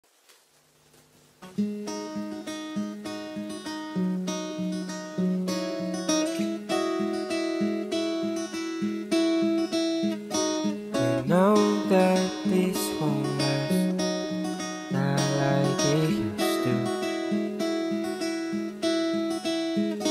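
Acoustic guitar playing a song's instrumental intro, coming in about a second and a half in after a near-silent start.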